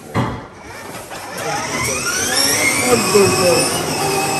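Battery-powered children's ride-on Mercedes-AMG toy car's electric drive motors whining as it pulls away, the whine climbing steadily in pitch as it picks up speed.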